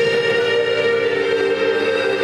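Free improvisation on a bowed double bass and a button accordion, holding long steady tones with many overtones, the strongest a mid-pitched drone.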